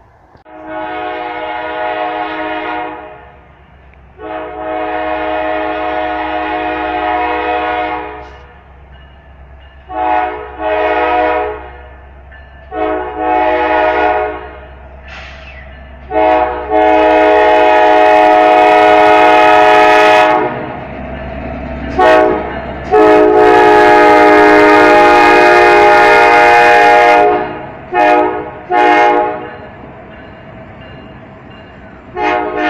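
A diesel freight locomotive's multi-chime air horn sounds a series of blasts, some long and some short, getting louder as the engine nears. The longest and loudest blasts come from about 16 seconds in. The locomotive's diesel engine hums low underneath.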